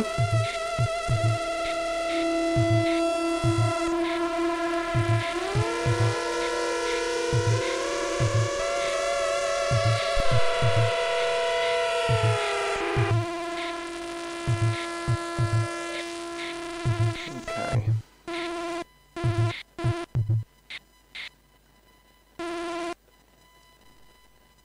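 Yamaha SU200 sampler pads playing layered synth samples made from a Korg Monotron: sustained drone tones with sliding pitches over short low thumps. The drones stop about 13 s in, leaving choppy stop-start bursts that thin out around 20 s, with one short burst near the end.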